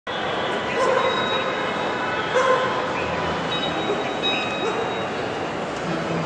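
Crowd chatter echoing through a large airport terminal hall, with two short, high bark-like yelps about one and two and a half seconds in.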